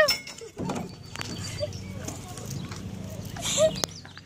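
A few scattered knocks and footfalls from a child climbing the steps of a playground structure, over a steady low rumble, with faint short voice sounds.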